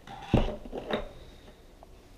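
Handling noise from vacuum parts being moved about on a tabletop: one dull thump about a third of a second in, then a few lighter knocks and rustles.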